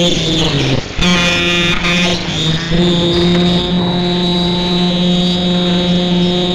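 Electronic music built on a buzzy, sustained low drone that steps between two nearby pitches and breaks off briefly about a second in.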